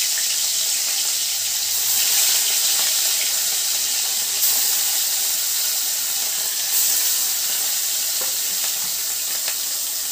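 Pieces of rohu fish frying in hot mustard oil in a kadai: a steady sizzle with small crackles.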